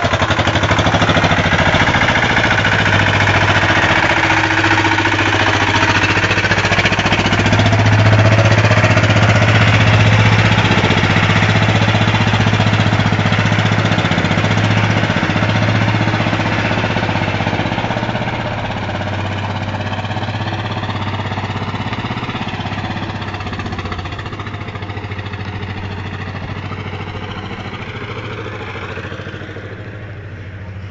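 Single-cylinder diesel engine of a home-built patpat four-wheel vehicle running with a steady, loud throb. The sound fades gradually over the last dozen seconds as the vehicle moves away.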